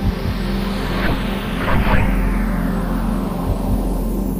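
Background music with steady sustained tones, under a whoosh that sweeps steadily down in pitch.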